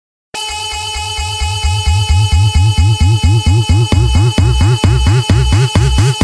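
Electro house music starting about a third of a second in: a fast pulsing synth bass with sweeping tones over held high synth notes, the pulse getting louder after about a second and a half. A kick drum comes in about four seconds in.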